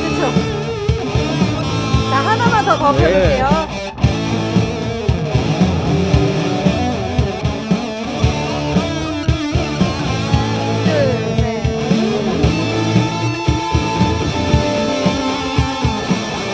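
Electric guitar played through a Nux MG-300 multi-effects processor: a lead line with bent, wavering notes over a recorded guitar loop and the unit's built-in drum machine keeping a steady beat.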